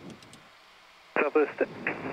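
Air traffic control radio on the airport ground frequency: about a second of quiet radio hiss, then a thin, radio-filtered voice transmission begins.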